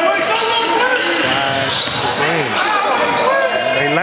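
A basketball being dribbled on a gym's hardwood court under many overlapping voices shouting from the crowd and players, echoing in the hall.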